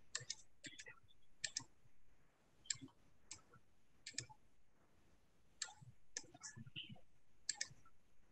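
Faint clicking of a computer mouse: about a dozen sharp clicks at irregular intervals, many of them in quick pairs.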